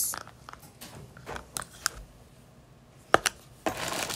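A few scattered light clicks and taps of plastic slime-making utensils and containers being handled, with a louder pair of taps a little after three seconds in.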